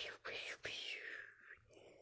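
A dog breathing and sniffing right against a phone's microphone: several short breathy huffs, fading near the end.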